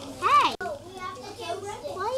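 Children's voices chattering in a small room, with one child's short, high-pitched call a few tenths of a second in as the loudest sound.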